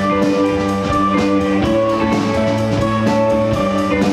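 Live rock band playing without vocals: electric guitars holding sustained chords over bass guitar and a drum kit keeping an even cymbal beat.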